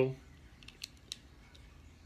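A few faint, light ticks of a small metal slotted fastener being picked up and handled in the fingers, around the middle.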